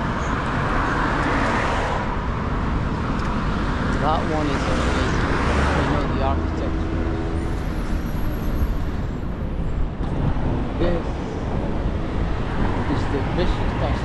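Road traffic on a busy multi-lane city road: cars and vans driving past close by, swelling louder about a second and a half in and again around five seconds in.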